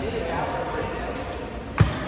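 Badminton racket striking a shuttlecock once, a sharp crack near the end, over indistinct voices and faint smaller hits in a large hall.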